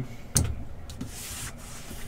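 A cardboard hobby-box case being picked up and handled: a sharp knock about a third of a second in, then a soft, steady sound of cardboard sliding under the hands.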